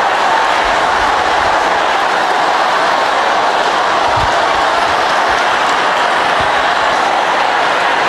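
A congregation praying aloud all at once, many voices blending into one steady, dense roar in which no single voice stands out, with a few low thumps.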